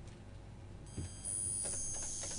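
A high-pitched steady electronic tone, like a beep, comes in about a second in and holds, louder than the faint background before it.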